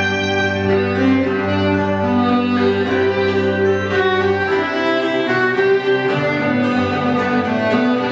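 Live Irish traditional instrumental music: a fiddle plays the melody over a plucked cittern accompaniment, with a cello holding long low notes underneath.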